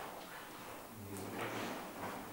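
A quiet pause with room tone, and a faint, low murmur of a man's voice about a second in.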